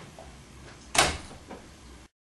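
An interior door being worked at the handle: one sharp bang about a second in, then a lighter knock.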